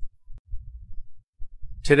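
A low, irregular throbbing rumble. The narrating voice comes in near the end.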